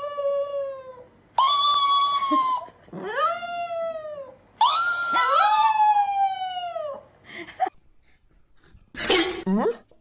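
Chihuahua howling: three long, drawn-out howls that each rise and then fall in pitch, with a second voice briefly overlapping the last one.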